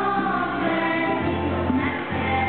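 Children's choir of girls' voices singing a religious song together, over a sustained keyboard accompaniment.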